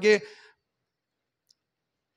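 A man's voice ends a word within the first half second, then near silence, broken once by a single faint, very short click about a second and a half in.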